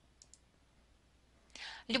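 A pause in a woman's narration, near silent apart from two faint clicks, then a short intake of breath about a second and a half in as her speech resumes.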